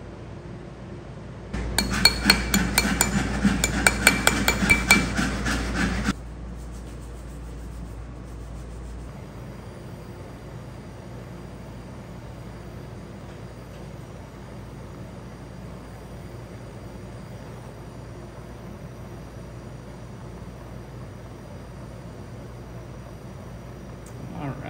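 Hand work on silver jewellery at a bench: a loud burst of rapid metal scraping and clinking that starts just under two seconds in and stops after about four seconds. A steady low hiss follows for the rest of the time.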